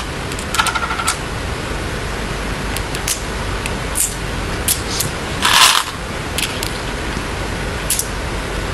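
Go stones clicking against a wooden Go board as they are set down and picked up: a handful of short, sharp clicks spread through, with a longer clatter of stones about halfway. A steady hiss lies underneath.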